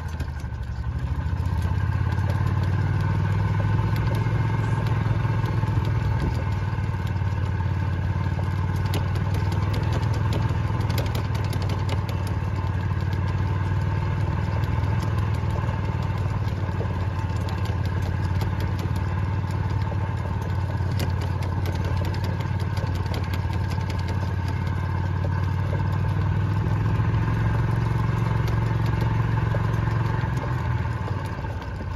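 Small utility vehicle's engine running steadily while it drives, with scattered light rattles and clicks.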